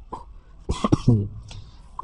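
A person coughing, a short harsh burst about three-quarters of a second in, followed by a brief throat-clearing sound.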